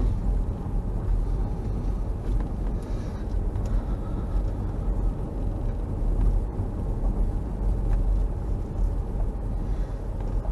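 A car driving slowly on a gravel road, heard from inside the cabin: a steady low rumble of engine and tyres.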